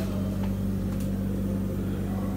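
Steady, even low hum of running workshop machinery.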